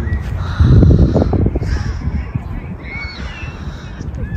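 A bird giving a few short calls, each a quick rise and fall in pitch, about three seconds in. Before them, about half a second in, comes a louder low rumble of noise.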